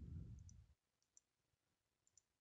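A few faint computer mouse clicks in the first second or so, against near silence.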